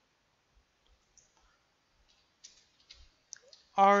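Computer keyboard being typed on: a short, irregular run of faint key clicks.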